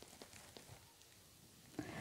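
Near silence: room tone, with a few faint soft clicks in the first second.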